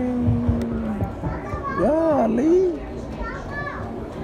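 Children's voices without clear words: a drawn-out call in the first second, then a loud exclamation that rises and falls in pitch about two seconds in, and shorter calls near the end.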